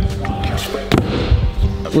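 Stunt scooter hitting a wooden half-pipe ramp: one sharp clack about a second in, with a few softer knocks around it, over background music.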